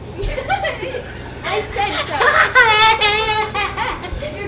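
Girls' voices, with unclear protesting and scuffling. Past the halfway mark comes a loud, high, wavering whine.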